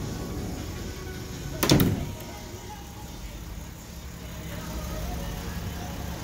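A single thump about two seconds in from the Sprinter van's door being handled, over a low steady hum, with faint music in the background.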